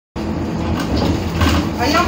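Steady low rumble of a city bus's engine and running gear, heard from inside the bus, cutting in suddenly just after the start, with people's voices beginning near the end.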